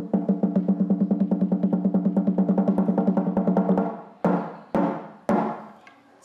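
Large wooden log drum struck with a wooden pole: a fast, even roll of about ten strokes a second, each with the same low wooden tone, for almost four seconds, then three single strokes. It is sounded as a call to a meal.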